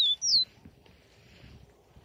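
Caged caboclinho (a Sporophila seedeater) singing: two clear whistled notes, each sliding down in pitch, ending about half a second in.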